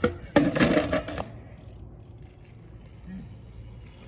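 A short, loud burst in the first second: a person's voice mixed with clattering. After that there is only a low, steady background.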